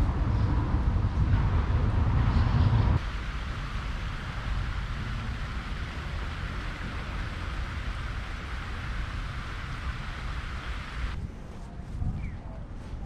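Outdoor city ambience: a steady rush of distant traffic, with a low rumble of wind on the microphone in the first three seconds. The sound changes abruptly at about three seconds and again near the end, where the shots are cut.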